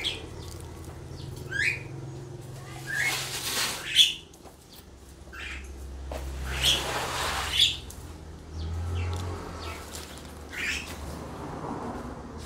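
Small birds chirping: short sweeping notes every second or two. Underneath is a faint steady low hum, and two longer noisy swishes come about three and six seconds in.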